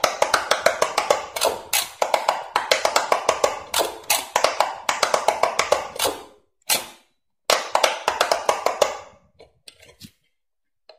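Rapid thumb presses on the silicone bubbles of a handheld electronic pop-it push game: runs of quick sharp clicks, several a second. The presses pause briefly about six and seven seconds in and thin out near the end.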